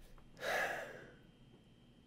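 A man's single short, audible breath, a gasp of amazement, about half a second long and fading out.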